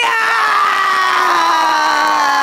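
One long, loud, high-pitched yell held on a single note. It starts with a quick rise and then slides slowly down in pitch, with other voices crying out above it.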